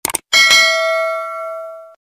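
Subscribe-button notification-bell sound effect: a quick double click, then a bright bell ding struck twice in quick succession that rings out for about a second and a half before cutting off.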